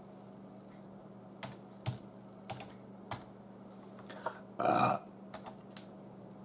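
Scattered clicks of a computer keyboard and mouse at irregular intervals, over the steady low hum of a running ceiling fan. About four and a half seconds in comes one short, louder burst of noise, followed by a few more light clicks.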